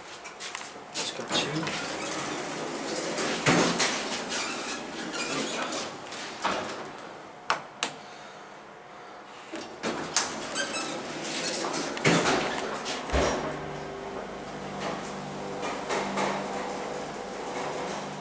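Elevator doors and fittings clunking and clicking. About thirteen seconds in, a thump starts a steady low hum: the 1982 Westinghouse hydraulic elevator's pump motor running as the car rises.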